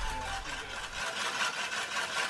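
Cordless drill turning a Sun Joe cordless reel mower's blade cylinder against the bedknife during backlapping: a steady motor hum with a fast, even scraping rhythm as the blades rub the bedknife and are ground sharp.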